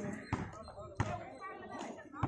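Voices of players and onlookers around a kabaddi court, with two sharp slap-like impacts, about a third of a second and a second in.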